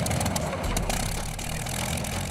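Piston engine of a vintage World War II propeller warplane running on the ground with its propeller turning: a steady low rumble with a fast pulsing beat.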